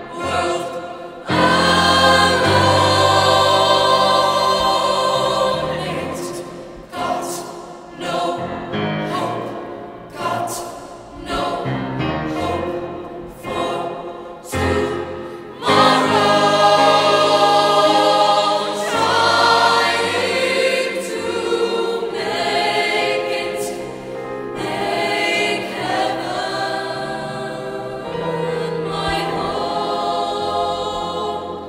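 Mixed choir of men's and women's voices singing, with loud held chords near the start and again from about halfway, and shorter broken phrases with brief breaths in between.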